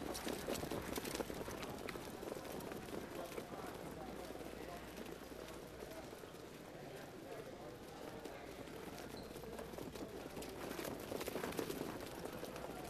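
Faint hoofbeats of a harness horse pulling a sulky on the dirt track, clearer near the start and again toward the end as another horse comes by, over distant voices.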